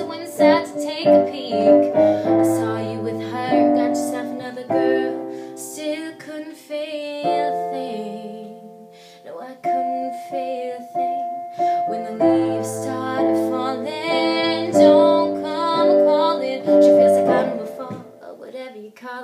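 Piano chords played on a keyboard, with a woman singing over parts of it; about halfway through the playing softens and held chords ring out briefly before the accompaniment builds again.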